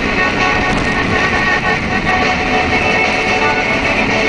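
A BMW E36's engine heard from inside the cabin, running under load while the car is driven sideways on snow. The car radio's rock music plays underneath.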